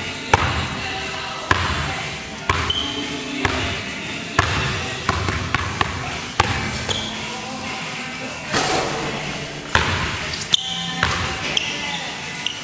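Basketball dribbled on a hardwood gym floor, with sharp bounces about once a second.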